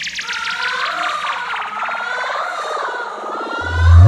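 DJ remix breakdown: a wavering, siren-like synth tone over a fast buzzing roll that sweeps steadily down in pitch. Near the end a deep bass swells in, leading into the drop.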